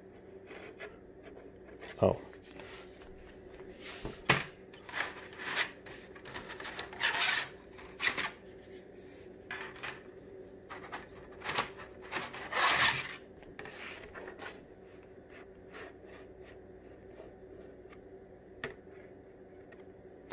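Thin plastic turbine scoop and end-plate pieces being handled and fitted together by hand: irregular rubbing, scraping and clicking, busiest over the first three-quarters and sparse near the end.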